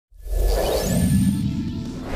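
Logo sting sound effect: a whoosh starting suddenly, with a quick rising run of short high notes that ends on a held high tone, over a low bass swell.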